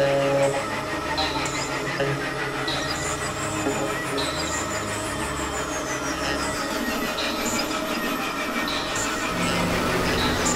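Experimental electronic synthesizer noise-drone: low droning pulses under high chirps that recur about once a second, with slow falling whistle-like sweeps through the middle, sounding somewhat like train-wheel squeal.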